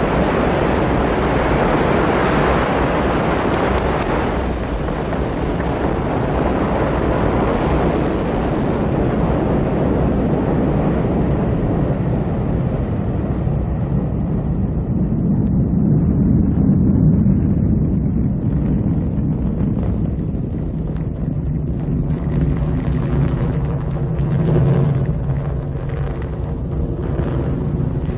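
Ariane 5 rocket at liftoff and in early ascent, its engines and solid boosters making a steady, deep noise. The upper hiss fades away over the first fifteen seconds or so, leaving mostly the low rumble.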